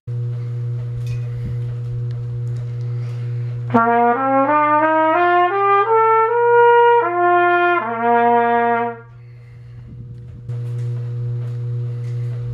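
A cornet played as a demonstration: a stepwise rising run of about eight notes over three seconds, a held top note, then a few more notes ending on a low held one, stopping about nine seconds in. A steady electrical hum runs underneath.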